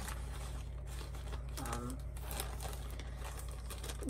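A clear plastic resealable bag crinkling as it is handled and pulled open by hand, with a steady low hum underneath.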